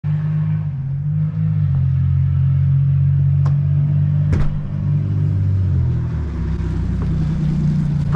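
A motor vehicle engine idling with a steady low rumble, its pitch shifting slightly twice, with two sharp clicks near the middle.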